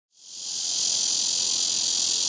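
Steady, high-pitched chorus of insects, fading in over the first half second and then holding level.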